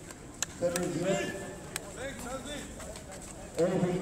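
Men talking in short spoken phrases with pauses between, and two or three brief sharp clicks.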